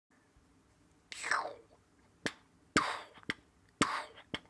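Beatboxing, or mouth percussion: sharp clicks and breathy hissing bursts in a loose beat, about two a second after the first second.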